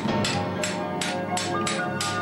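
Steady, rhythmic hammer blows on steel, about three a second, as in forging a blade at the anvil, over background music.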